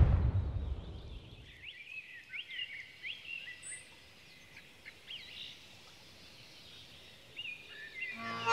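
The rumbling tail of a cannon shot dying away in the first second or so, then birds singing: short chirps and whistles, faint over the open-air background.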